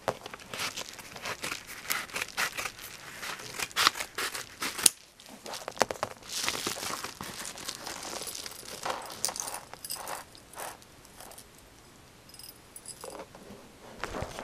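Padded paper mailer crinkling and rustling as it is opened and handled by hand, in dense irregular bursts that are loudest in the first five seconds, thinning out after about eleven seconds.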